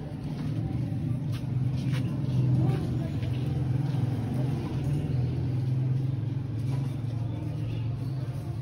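A steady low engine hum, like a motor vehicle running nearby, swelling about a second in and holding, with faint light rustles and clicks over it.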